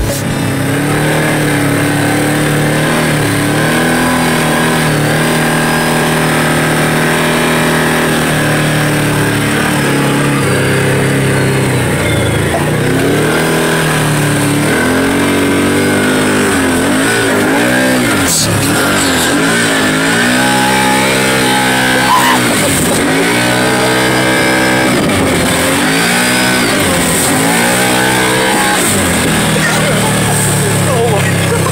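Can-Am Maverick 1000R side-by-side's V-twin engine running under way, heard from on board: fairly steady at first, then revved up and let off again and again, about every two seconds, through the second half.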